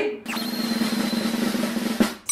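A snare drum roll, the kind of suspense sound effect added in the edit. It starts just after a beat of silence and stops abruptly.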